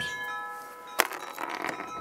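Chimes ringing: several clear tones at different pitches, held and slowly fading, with one sharp click about halfway through.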